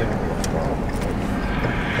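Steady road and engine noise of a moving car, heard from inside the cabin.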